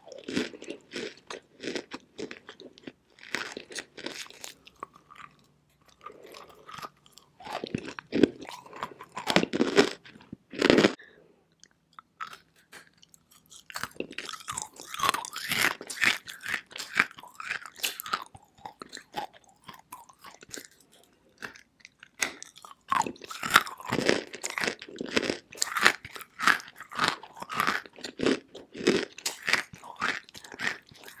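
Dry chunks of edible clay being bitten and chewed close to the microphone: runs of crisp, sharp crunches with a couple of short pauses. One loud crunch comes about eleven seconds in.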